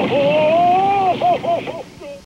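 A man's high falsetto wailing cry: one long drawn-out 'oooh' that climbs slightly, then breaks into four short sobbing 'oh's near the end.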